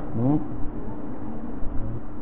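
A man's voice speaks a short syllable at the start, then a steady low hum and rumble continues.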